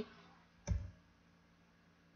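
A single computer mouse click, with a low thud to it, about two-thirds of a second in, advancing a presentation slide.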